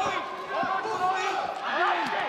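A male sports commentator speaking excitedly over arena crowd noise.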